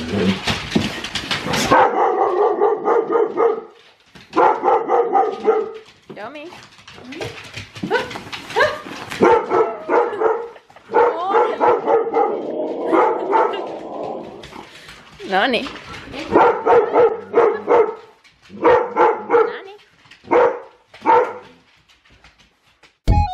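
Huskies howling and whining in excited greeting: a string of drawn-out, pitched calls, each a second or two long with short gaps, some sliding upward in pitch. The first couple of seconds are a denser, noisier jumble of dog sounds.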